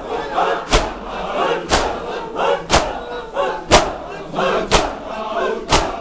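A crowd of mourners beating their chests with open hands in unison (matam), one loud slap about every second, with the crowd chanting between the beats.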